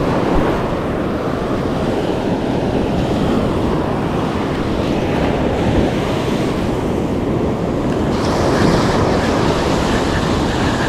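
Surf breaking and washing up a sand beach close by, a steady rush of water with wind buffeting the microphone; the hiss of foam grows brighter near the end.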